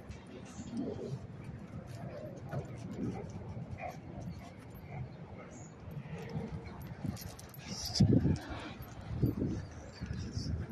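A dog making short, low vocal sounds, the loudest a little before the end.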